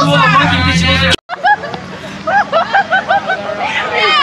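Teenagers' overlapping voices and shouting inside a school bus over the steady low hum of its engine, cut off abruptly about a second in; then a group outdoors yelling in short, excited shouts.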